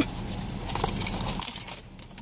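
Hands opening a small cardboard blind box, with scattered faint rustles and clicks from the cardboard and packaging.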